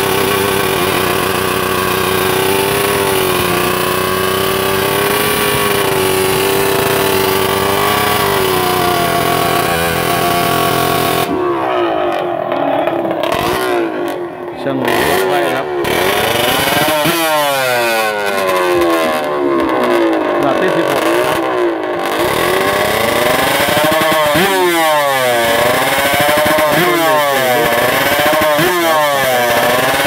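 Two-stroke drag-racing motorcycle engine with a reed-valve intake, held at steady high revs at the start line for about ten seconds. It is then blipped again and again, the revs sweeping up and down.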